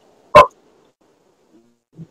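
A single short, sharp click or knock about a third of a second in, loud against the otherwise near-silent line.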